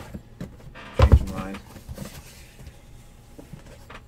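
A cardboard trading-card hobby box being pulled out of a case of boxes and handled, with one loud knock about a second in and faint scraping and clicks after.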